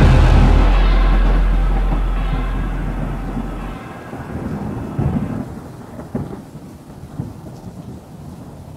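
Rolling thunder with rain: a deep rumble fading over the first few seconds, then a steady patter of rain with further low rumbles about five, six and seven seconds in.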